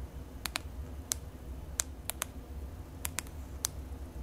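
Sharp button clicks from a FLIR E4 thermal camera being operated, about nine presses at uneven intervals with some in quick pairs, as its temperature scale is switched to manual and adjusted. A low steady hum runs underneath.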